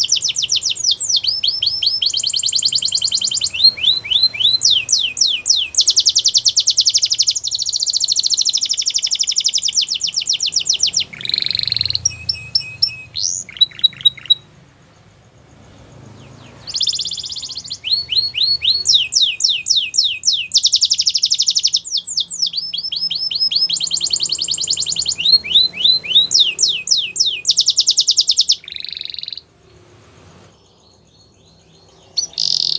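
Domestic canary singing a long, high-pitched song of rapid trills and rolling runs of repeated notes. The song breaks off for about two seconds in the middle, then resumes and stops shortly before the end.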